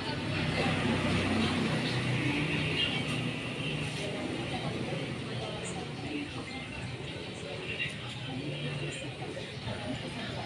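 Steady background din of distant voices and street traffic, with music faintly beneath it.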